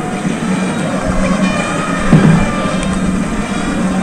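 Music and crowd noise from a football stadium crowd, with sustained tones and a louder swell about two seconds in.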